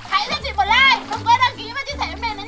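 Children's high-pitched, swooping shouts and cries at play in a pool, over background music with a steady stepping bass line.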